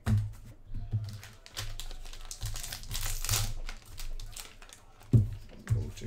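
Hands handling plastic graded trading-card slabs: crinkling and small plastic clicks, with two sharp knocks near the end.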